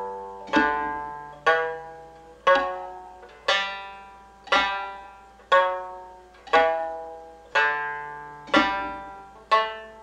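Mongolian shanz (shudraga), a three-string fretless lute, plucked one note at a time at a slow, even pace of about one note a second, each note ringing and fading before the next: a fingering exercise moving up and down a scale.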